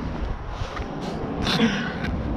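Handling noise as a heavy Iceco portable cooler in a padded fabric cover is lifted and shifted: a low rumble of knocks and rustling against the microphone, with a short, sharper rustle or scrape about one and a half seconds in.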